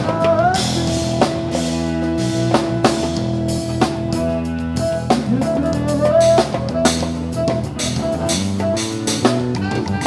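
Live band playing blues-rock: electric guitar lead over bass guitar and drum kit, with the lead notes sliding up in pitch about half a second in and again around six seconds.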